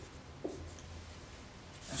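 Dry-erase marker writing on a whiteboard, ending with a short tap about half a second in.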